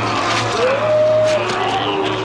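A man screaming in long, repeated cries as zombies tear him apart. Each cry rises, holds and then drops off, coming about every second and a half over a steady low hum.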